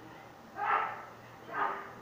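Two short, loud grunts of effort from a man as he lifts a barbell, about a second apart.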